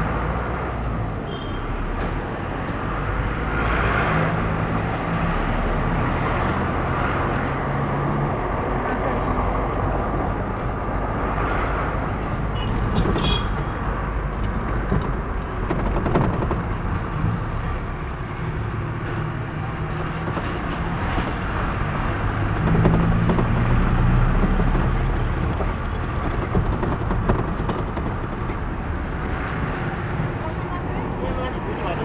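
Engine and road noise heard from inside a moving vehicle, the engine note swelling twice as it picks up speed.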